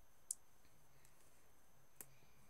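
A computer mouse clicking: one short, sharp click a moment in and another at the very end, over near silence.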